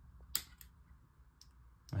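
A switch wired to the Helix Floor's expression pedal 3 input is pressed once with a sharp click about a third of a second in, followed by a fainter tick, toggling the wah block on.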